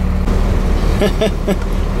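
Low, steady running drone of a Hino tow truck's diesel engine, heard from inside the cab while driving.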